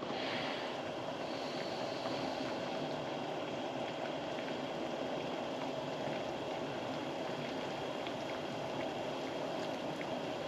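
Pot of water at a rolling boil with a dozen eggs in it on a gas stove: steady bubbling with a faint even hum underneath.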